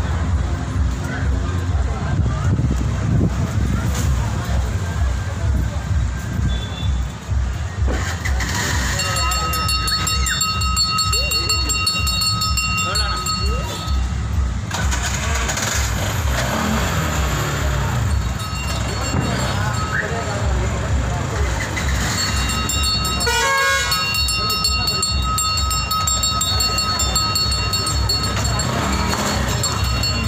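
Auto-rickshaw's small engine running with a steady low pulse under a busy crowd of voices. A high-pitched horn sounds in long held notes twice, for several seconds about a third of the way in and again through the last part.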